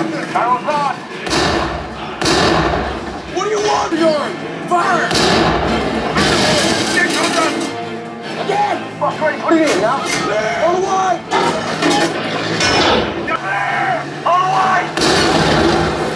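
War film soundtrack from a tank battle scene: voices over repeated gunfire and explosions, with music underneath.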